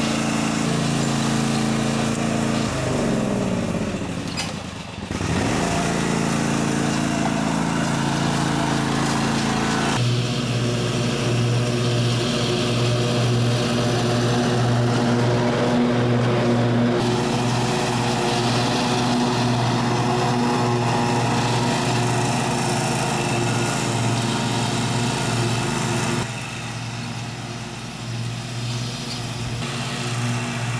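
Zero-turn riding lawn mower's engine running while mowing, a steady drone. The pitch sweeps down a few seconds in, and the sound is quieter near the end.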